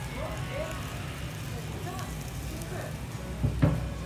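Busy restaurant kitchen ambience: indistinct voices over a steady low hum, with a single knock a little after three seconds in.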